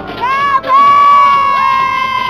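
Nightclub crowd cheering, with a loud, high-pitched, drawn-out scream from someone close to the microphone. It starts a fraction of a second in, breaks briefly, then holds. A second scream joins about halfway through.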